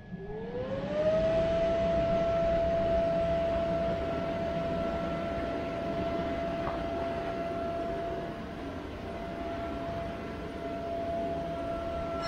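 A bounce house's electric inflator blower starting up: its motor whine rises over about a second to full speed, then runs steady over a rush of air.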